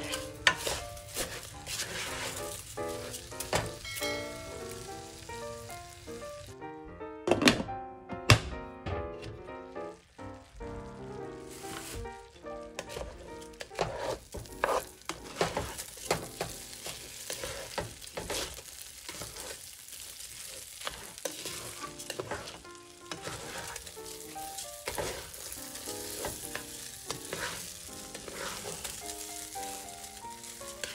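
Raw rice grains frying in oil in a metal pot, sizzling while a spatula stirs and scrapes them around the pan. Two louder knocks of the spatula come about seven and eight seconds in.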